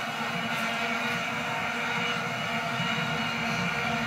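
Steady, unbroken humming drone of many vuvuzela horns from a stadium crowd, heard through a Samsung TV's speakers with the equalizer's 300 Hz band turned to minimum to cut the hum.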